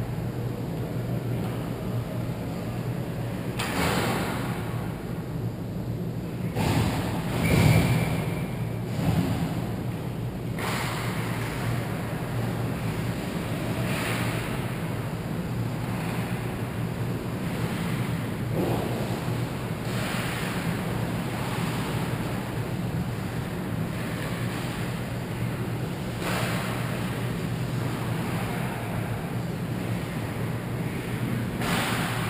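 Ice hockey rink ambience: a steady rushing hum with the faint noise of play on the ice, and a few louder swells of scraping noise about four and eight seconds in.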